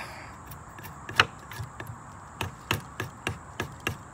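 Muela 5161 knife blade whittling a wooden stick: a dozen or so sharp, irregularly spaced clicks as the edge bites and shaves the wood, the loudest about a second in.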